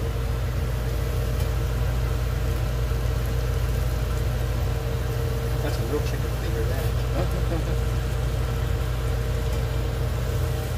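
Battered chicken strips frying in hot olive oil in a pan, a steady sizzle as pieces are laid into the bubbling oil, over a steady low mechanical hum.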